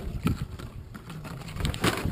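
Gusty wind rumbling on the microphone, with two sharp crackles, one about a quarter second in and one near the end.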